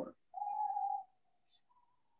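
A short steady whistle-like tone lasting about two-thirds of a second, then a fainter one that steps up a little higher near the end.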